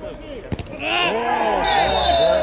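A football kicked with a single sharp thud about half a second in, followed by several players shouting at once. Near the end a steady high whistle blast begins, a referee's whistle stopping play as a player goes down.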